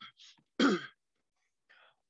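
A man clearing his throat once, briefly, about half a second in, with a faint breathy sound before it and another near the end.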